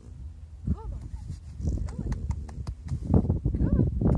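Wind buffeting the microphone as a steady low rumble, with two short calls that rise and fall in pitch, one about a second in and one near the end, and a few light clicks between them.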